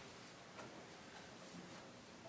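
Near-silent room tone with a wall clock ticking faintly, about once a second.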